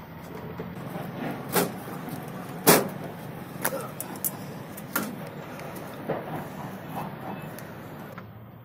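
Knocks and clunks from a truck's cab door and a man climbing down from the cab and walking on stony ground, roughly one a second, the loudest about three seconds in, over a steady low rumble.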